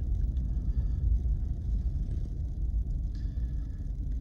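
Steady low rumble inside the cab of a Chevy Silverado 1500 pickup driving over a snow-covered road: engine and tyre noise.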